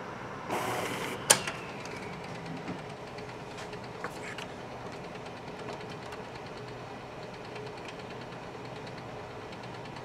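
Canon imagePROGRAF PRO-1000 inkjet printer running a print job: a steady mechanical whir with one sharp click about a second in.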